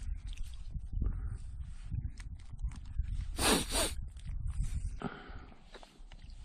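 Crinkling and rustling of a plastic ready-meal pouch and its sauce packet being handled and mixed, with a louder crinkle about three and a half seconds in, over a steady low rumble.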